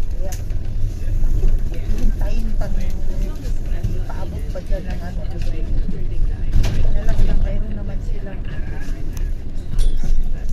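Steady low rumble of a moving London double-decker bus, heard from inside on the upper deck, with indistinct passenger chatter over it.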